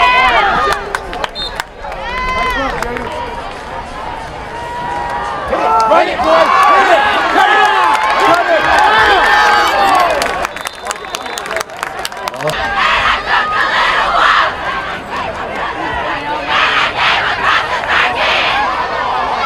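Football crowd cheering and yelling, many voices shouting at once, loudest from about six to ten seconds in. A cluster of sharp clicks comes shortly after.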